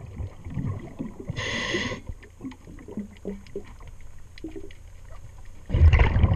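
A diver's breathing regulator underwater: a short hiss of inhaled air about a second and a half in, then quieter water noise with faint scattered clicks, and a loud rush of exhaled bubbles starting near the end.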